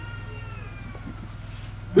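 A pause in amplified speech: the steady low hum of a microphone and sound system, with a faint drawn-out tone that slides slowly down and fades out about a second in.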